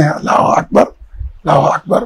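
A man laughing heartily in a few short, breathy bursts.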